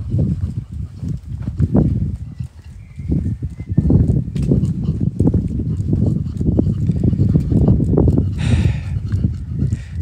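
Low rumble and irregular thumps on a hand-held phone's microphone, typical of wind buffeting and handling noise.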